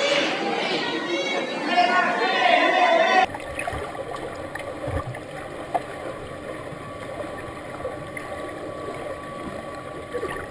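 Spectators shouting and cheering at a swimming race, over the splashing of freestyle swimmers in an echoing indoor pool. About three seconds in the sound changes abruptly to a quieter, muffled underwater recording: water rumble and bubbling, with a few dull knocks as a freestyle swimmer strokes past.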